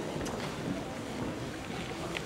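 Reverberant hall ambience: indistinct murmur of people talking, with a few light taps of footsteps on the wooden dance floor.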